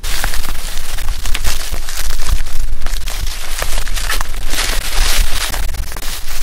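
Wind buffeting a bike-mounted camera's microphone as the e-bike rolls over dry leaf litter and sticks, a loud rumbling rush with many short crackles and crunches from the tyres. It starts suddenly and runs on steadily.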